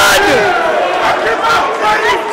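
Live crowd yelling and shouting, many voices overlapping, with a man's excited shout at the very start.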